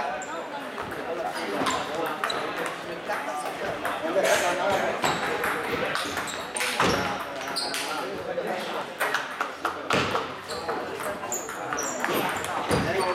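Table tennis balls clicking off tables and bats, many short sharp hits scattered irregularly from several games at once in a large hall, over a steady background murmur of voices.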